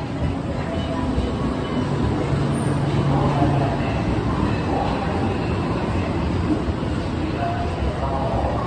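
Railway platform ambience beside an electric limited-express train, with a steady rumble and hum and faint voices in the background.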